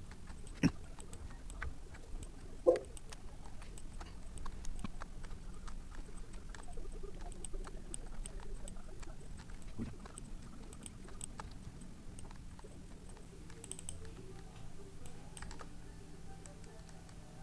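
Computer keyboard typing in scattered, irregular keystrokes and clicks, with two louder knocks in the first three seconds.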